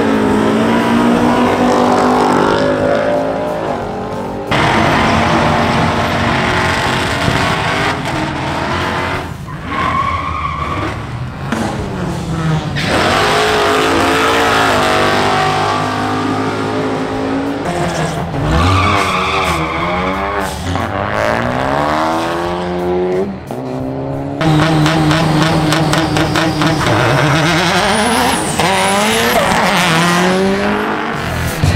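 Cars launching and accelerating hard down a drag strip, their engines revving up in rising pitch and dropping back at each gear change. The sound changes abruptly several times, from one car's run to another's.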